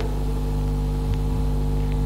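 Steady electrical mains hum with its overtones, picked up by the microphone and recording system.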